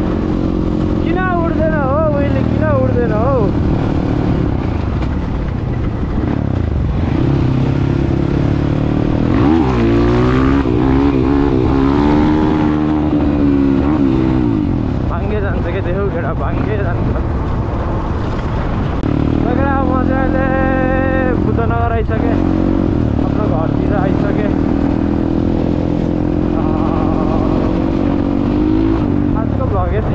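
Dirt bike engine running while riding, its pitch rising and falling repeatedly with the throttle.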